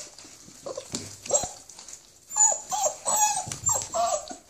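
Five-week-old French x American hound puppies giving short whining calls as they tussle over a piece of meat: a couple about a second in, then a quick run of them through the second half.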